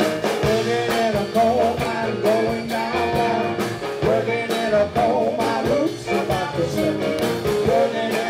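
Live band playing an upbeat rock-and-blues number, a man singing over a stage piano, with drums keeping a steady beat.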